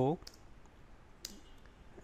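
A single computer key click a little over a second in, against quiet room tone: a key pressed to enter a typed command.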